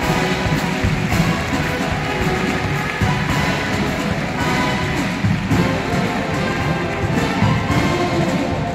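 Marching show band playing live: brass instruments with drums and percussion.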